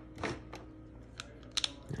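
A few light, scattered clicks and taps from handling a plastic plug and its cord, pushing the cord into the plug's strain-relief clamp, with a small cluster of clicks near the end.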